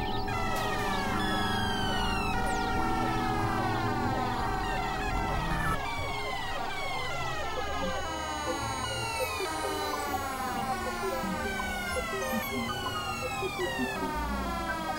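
Layered experimental electronic music: a pitched tone with overtones slides downward again and again, about three slides every two seconds, over a steady drone and low hum.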